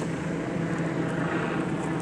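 Car engine idling steadily with a low, even hum.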